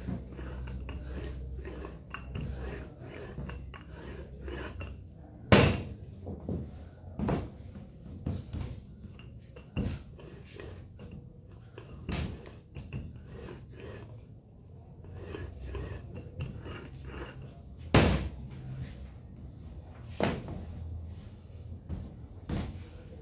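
Rolling pin rolling out laminated dough on a work table: a low rumble from the rolling, with scattered knocks and two sharp louder ones, about six seconds in and near the end.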